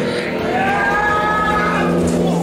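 A long, drawn-out low call held at a steady pitch for about a second and a half, starting about half a second in.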